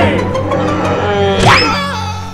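Cartoon background music over a steady low drone, with a quick upward-sliding sound effect about one and a half seconds in.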